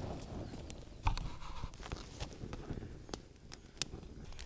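Small kindling fire crackling faintly, with scattered sharp pops and ticks. The bundle of needles and brush is smouldering as it catches, and the brush is fairly green. A faint low rumble sits underneath.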